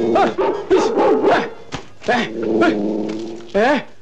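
Dog-like yelping and whining: short cries with bending pitch among longer held whines, with a rising yelp near the end.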